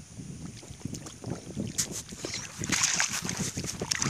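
Muddy rice-paddy water sloshing and splashing as a small child crawls through it, growing louder in the second half, with wind buffeting the microphone.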